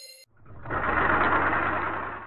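A car's engine and road noise with a low rumble, swelling in over about half a second, then holding loud and steady.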